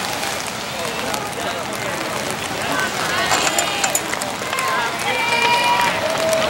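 Spectators at a track race shouting and calling out, in short high voices over a steady outdoor hiss.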